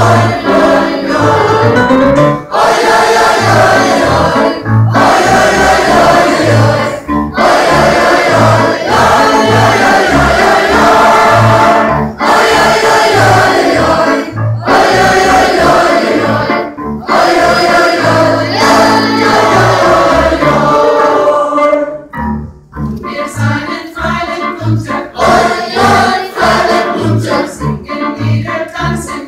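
Mixed choir of adults and children singing a lively folk song, over a steady pulse of low double bass notes. The singing drops away briefly a little before the end, between phrases, then picks up again.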